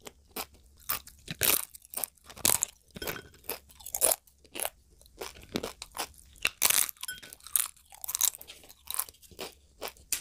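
Close-miked chewing of crunchy food: a run of sharp, irregular crunches, one every half second or so, with softer chewing between.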